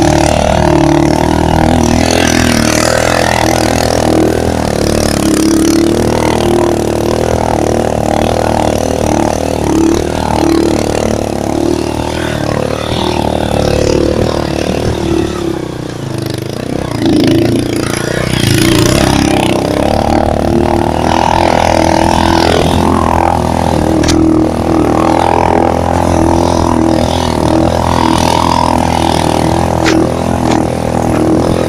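Motorcycle engine running hard as it climbs a steep dirt trail, its revs rising and falling with the terrain; it eases off briefly around the middle, then picks up again.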